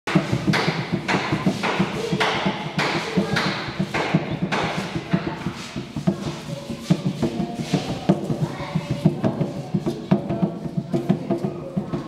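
Chadian tam-tam hand drum played with bare hands in a fast, dense rhythm: steady low strokes throughout, with sharp slaps accented about twice a second in the first half that then drop away.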